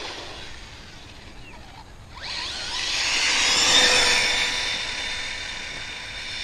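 Arrma Typhon RC buggy on a flat-out speed run: the whine of its brushless electric motor with tyre noise fades into the distance, then rises in pitch and loudness as the buggy races back, peaking about four seconds in before fading again.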